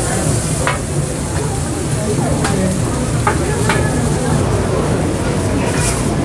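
Korean pancakes (jeon) frying in oil on a flat griddle, a steady loud sizzle, with a few short sharp clicks.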